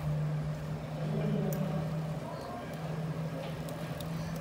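City street ambience dominated by a steady low hum, with faint voices of passers-by in the background.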